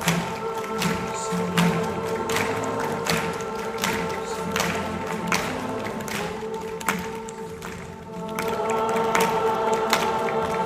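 A large concert audience singing sustained chords in harmony, with a sharp beat keeping time about every three-quarters of a second. The singing thins out about eight seconds in, then swells back up.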